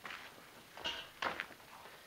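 Hands rummaging through a pile of burnt coal lumps on a plastic tarp, with a few faint short scrapes and clicks about a second in.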